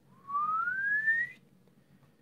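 A single whistled note rising steadily in pitch, lasting a little over a second.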